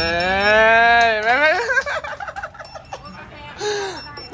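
A man singing unaccompanied, holding one long drawn-out note that bends down and breaks off after about a second, followed by brief talk.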